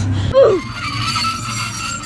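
A woman laughing: a short laugh that falls in pitch about half a second in, then a long, high, held squeal of laughter.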